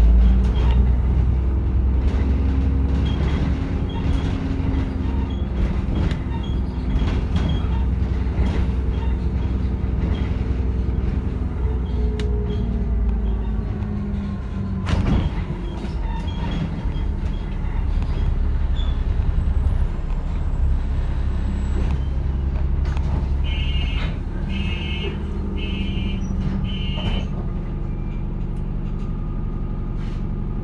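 Alexander Dennis Enviro400 double-decker bus's diesel engine running as the bus drives, heard from the upper deck, with clicks and rattles from the body. The low engine rumble drops after about 23 seconds as the bus slows and pulls up at a stop. Just after that, four short beeps sound, typical of the door warning.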